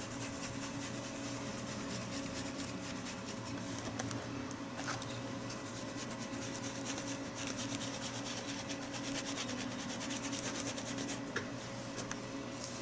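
Foam dauber dabbing acrylic paint through a plastic stencil onto a journal page: a steady run of quick soft pats and scuffs, over a low steady hum.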